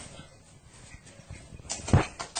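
Faint room noise, then near the end a quick cluster of knocks and clicks from a door's handle and latch as a cat works the door open.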